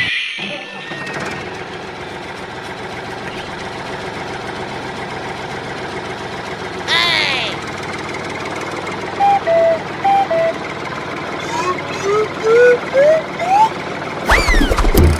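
Dubbed toy-vehicle sound effects: a steady engine-like drone with a short cartoon burst about seven seconds in. Four alternating two-tone beeps follow, then a run of short rising chirps near the end.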